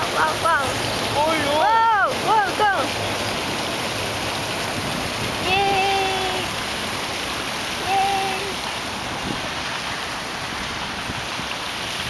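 Steady rushing splash of a pond aerator fountain spraying a jet of water onto the pond surface. Voices are heard over it in the first few seconds, and there are two short steady tones partway through.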